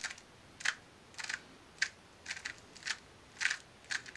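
Layers of a Valk 2M 2x2 speed cube being turned in quick succession, about nine short plastic clacks, one for each turn of a nine-move algorithm.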